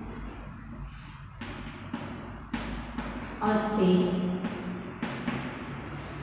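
Chalk tapping and scraping on a blackboard during writing, with a few sharp taps spread through. A woman's voice murmurs briefly about three and a half seconds in.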